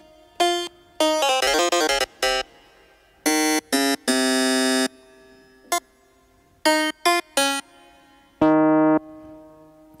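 Sampled piano voice of the Groove Rider GR-16 iPad groovebox app, played by tapping its pads: short, irregular single notes and chords with gaps between, two held for under a second. The oscillator pitch is raised about six semitones, so the piano is pitched up.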